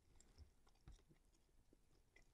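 Near silence with a few faint soft clicks and crackles of dried salted roach being eaten.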